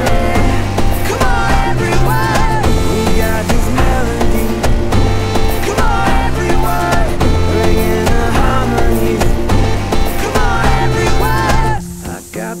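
Instrumental break of a folk-pop band song: acoustic guitar and ukulele over steady bass, with percussion beaten on a Volkswagen Beetle's body and a wavering lead melody. The full band drops out right at the end.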